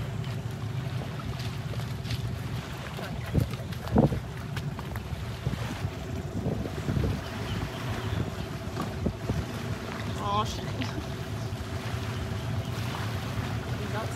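Wind buffeting the microphone over water lapping around a small boat, with a low steady hum underneath. Two sharp knocks come about three and a half and four seconds in.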